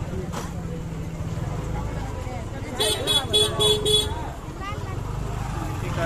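A vehicle horn honks a quick run of about five short beeps partway through, over a steady low rumble of traffic and the chatter of voices.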